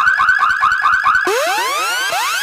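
Electronic alarm-like sound effect opening a DJ mix: a fast repeating warble, about five pulses a second. A little over a second in it switches to rising synth sweeps that repeat.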